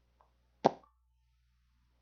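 A single short, sharp click or pop about two-thirds of a second in, with a brief faint ring after it; otherwise near silence.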